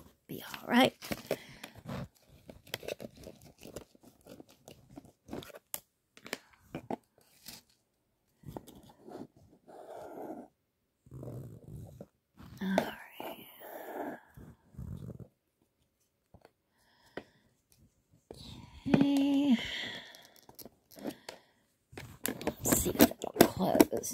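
A wooden stick scraping and pushing loose substrate in a plastic enclosure, with many small clicks and crunches. Quiet murmuring in between, and a short louder hum-like voice about nineteen seconds in.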